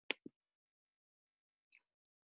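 A sharp click followed at once by a softer, lower knock, then a faint tick near the end, against otherwise dead-quiet gated call audio.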